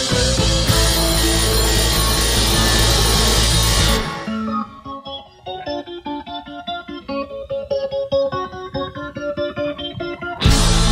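Rock song instrumental: the full band plays until about four seconds in, then drops away suddenly to a lone guitar picking out notes in an even rhythm.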